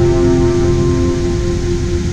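Rushing water of a large waterfall, a steady hiss, mixed with background music holding a sustained note.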